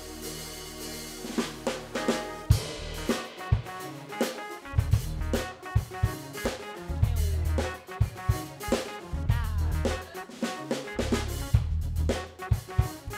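Live band with a drum kit: a held low note or chord, then the drums come in about a second in with snare and bass-drum hits in a steady groove over electric bass and keyboard.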